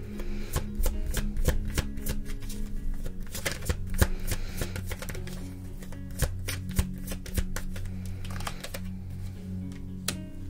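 A deck of tarot cards shuffled by hand: a quick run of sharp card clicks and slaps, thickest in the first half and sparser later. Steady background music plays under it.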